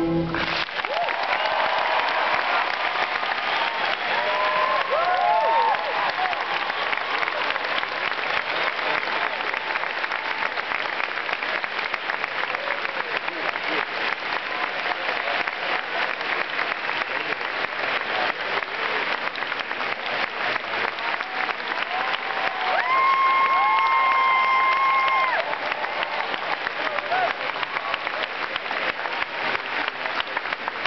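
A large audience applauding and cheering at the end of a solo cello performance, with whoops and whistles. The applause cuts in as the cello's last note ends and runs on steadily. Late on, a steady high tone is held for about two to three seconds over the clapping.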